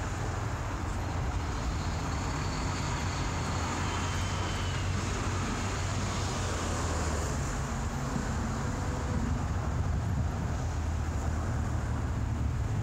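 Steady low rumble of vehicle and traffic noise.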